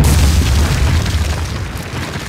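Sound effect of a stone wall bursting apart: a deep rumbling boom dying away, its low rumble cutting out near the end, with a hissing crackle of crumbling rubble over it.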